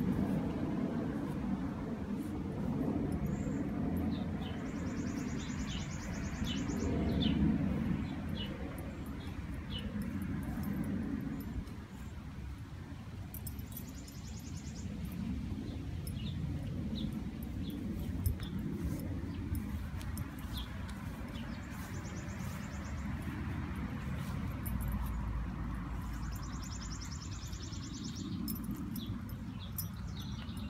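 Backyard ambience: small birds giving short high chirps, with a few brief high buzzy trills, over a low steady rumble.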